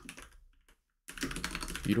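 Typing on a computer keyboard: after a brief silence, a quick run of key clicks starts about a second in.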